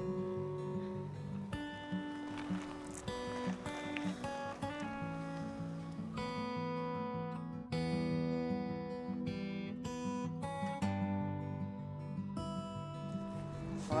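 Background film music led by acoustic guitar, plucked notes over a moving bass line.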